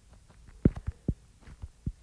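Stylus tip knocking on a tablet's glass screen during handwriting: several irregular soft low thuds over a faint hum.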